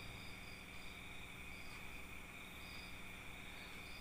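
Faint background with a steady hum and a few short, high chirps at irregular intervals.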